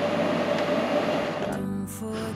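Small electric blade grinder's motor running steadily on inverter power, then cutting off abruptly about one and a half seconds in. Background music follows.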